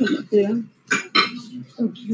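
A spoon clinking and scraping against a plate while eating a meal of rice, with a few sharp clinks near the start and about a second in.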